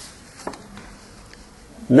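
Low room noise with two faint clicks as papers are handled on a lectern; a man's voice starts again at the very end.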